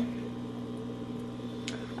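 A steady low hum with a few faint constant tones in a small room, with one faint click near the end.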